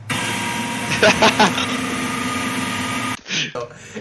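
A screamer prank's sound: a sudden loud blast of harsh noise with a shriek in it, strongest about a second in, starting abruptly and cutting off after about three seconds. It goes off almost immediately, with no build-up.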